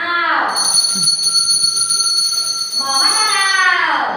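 A small bell ringing with a steady, high, clear tone for about three seconds, then fading as voices come in near the end; voices are also heard at the very start.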